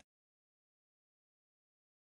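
Near silence: the audio is effectively muted, with no audible sound.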